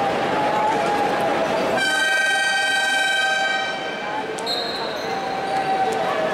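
Basketball arena horn sounding over crowd noise: a loud buzzer tone starts suddenly about two seconds in and fades after about two seconds. A high thin whistle tone follows near the end.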